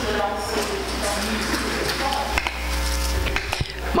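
People rising from their seats at a council desk: a steady low rumble on the desk microphones, a few light knocks and faint murmured voices.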